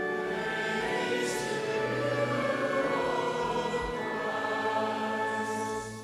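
A congregation singing a short sung response in unison over sustained organ chords, the last chord held and fading out near the end.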